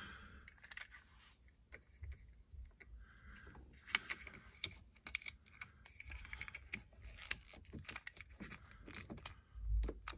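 Light plastic clicks and rattles from a fog light switch and its wiring connector being handled and fitted into the dash switch opening. There is a sharper click about four seconds in and a dull bump near the end.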